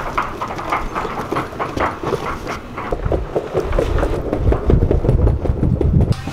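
Wheeled luggage rolled along a wooden boardwalk, with footsteps: a rapid, uneven clatter of the wheels over the plank joints. A low rumble grows louder from about halfway through.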